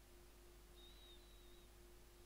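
Near silence: faint room tone with a steady low hum, and a brief faint high-pitched tone about a second in.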